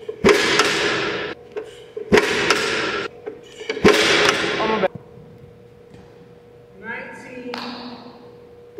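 Footballs flying in a catching drill: three sharp thumps about two seconds apart, each followed by about a second of loud hiss. A brief voice comes near the end.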